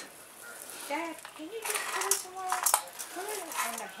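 A few sharp metallic clicks and clinks from a grabber pole's jaws and shaft as it clamps and holds a struggling king snake on concrete, the busiest cluster about two and a half seconds in.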